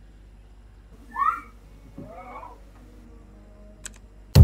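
Two short squeaky sounds that bend in pitch over a quiet room: a louder one about a second in and a fainter, longer one a second later, then a small click near the end.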